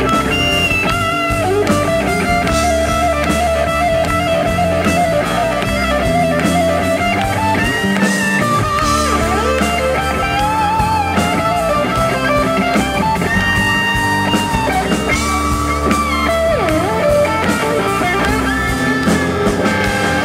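Rock band playing an instrumental passage with no vocals: an electric guitar lead line with bent, wavering notes over bass and drums.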